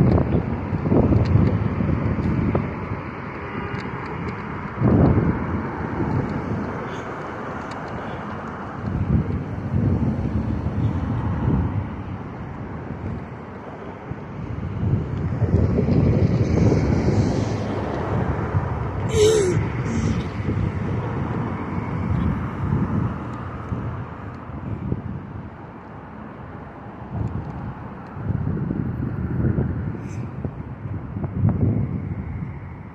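Passing road traffic, a low rumble that swells and fades as vehicles go by, with wind buffeting the phone's microphone. A short high squeal, falling in pitch, about two-thirds of the way in.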